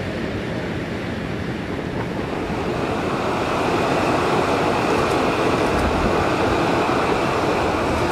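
Steady rushing hiss of a volcanic fumarole field, steam and gas venting beside pools of boiling water, growing a little louder about three seconds in.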